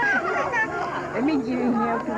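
Indistinct chatter: several people's voices talking over one another.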